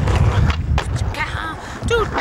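Skateboard wheels rolling over street asphalt, a rough low rumble with a few small clicks. A voice calls out briefly in the second half.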